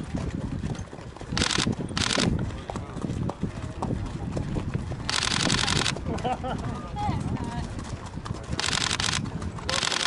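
Racehorses walking on a sandy path, their hoofbeats mixed with several short bursts of hissing noise and people talking in the background.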